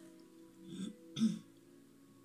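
A woman clears her throat twice in quick succession, the second time louder, about a second in. Soft background music with steady sustained low notes plays throughout.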